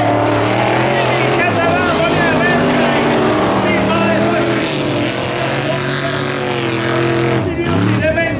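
Modified dirt-track race cars' engines running hard together, a steady layered drone. Near the end one engine note drops briefly and then revs back up.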